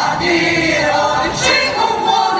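Mixed choir of men's and women's voices singing together without instruments, several pitch lines sounding at once.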